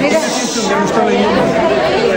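Several people talking at once: overlapping chatter from a small crowd, with no single voice standing out.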